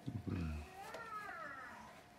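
A Siberian husky's high, wavering whine-like vocalisation, about a second long, following a short low-pitched voice at the start.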